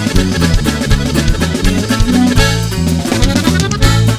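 Norteño band playing an instrumental passage with no singing: drum kit and guitar over a steady beat.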